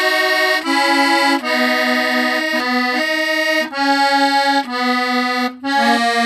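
Squeeze box (accordion-type free-reed instrument) playing a tune in held, reedy chords, the notes changing about every half second to a second, with a short break in the sound near the end.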